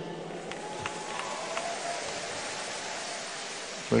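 A pause in speech, filled by the steady hiss of the hall's amplified room tone. A few faint clicks come in the first second and a half.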